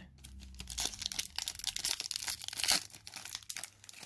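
Foil wrapper of a 2022 Donruss football trading-card pack being torn open and crinkled in the hands: a dense run of crackles, loudest about three seconds in.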